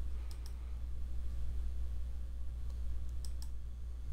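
Faint computer mouse clicks, two close together near the start and two near the end, over a low steady hum.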